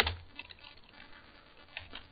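Computer keyboard keystrokes: one sharp key press right at the start, then a few faint key taps.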